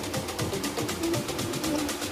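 Background music with a quick, steady beat and a melody.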